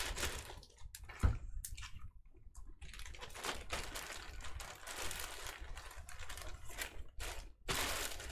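Typing on a computer keyboard in irregular runs of clicks, with a single soft thump about a second in.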